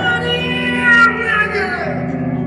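Live heavy metal band playing, with a high, bending melodic line over sustained chords and a sharp click about a second in.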